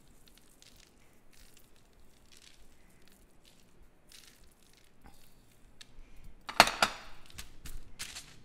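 Sprinkles pattering lightly onto sticky popcorn on a sheet pan in soft scattered ticks, then, near the end, a louder crunching rustle as hands push into the marshmallow-coated popcorn.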